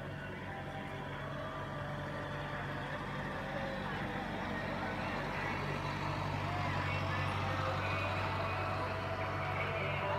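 Engine of a vehicle towing a parade float, running low and steady as it rolls slowly past and growing louder, with faint voices of onlookers.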